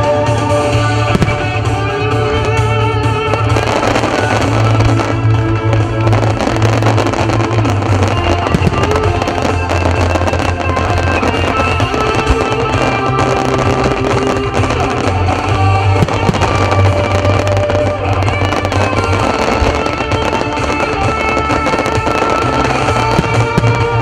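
Fireworks show set to music: loud music over the show's loudspeakers, with fireworks going off throughout, a dense crackle and popping of small bursting stars and several louder bangs from shells.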